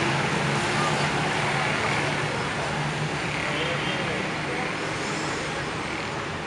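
Road traffic with a motor vehicle engine running close by: a low steady hum over a constant rush of street noise that slowly fades.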